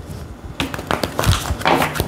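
A deck of tarot cards being shuffled by hand: a run of quick, irregular card clicks and taps.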